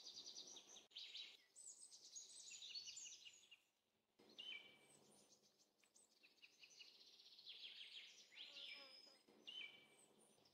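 Faint birdsong: repeated chirps, quick trills and short falling whistled notes, with similar phrases coming back about every five seconds.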